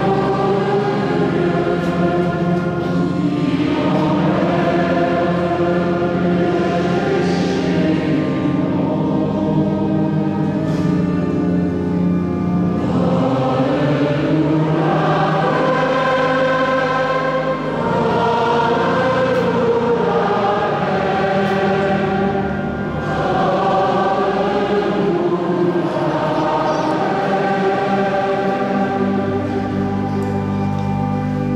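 Choir singing sacred liturgical music at the Mass, with long held notes over steady sustained low notes beneath.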